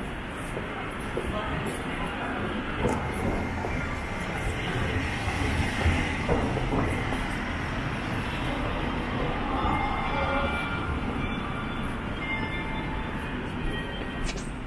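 Steady rumble of busy city-street traffic, cars and taxis passing, heard from the pavement.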